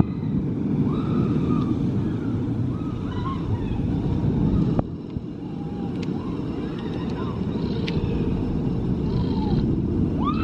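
Steady low rumble of a Zierer tower coaster train running on its steel track. A few short voices call out over it, and there is a brief dip with a click about halfway through.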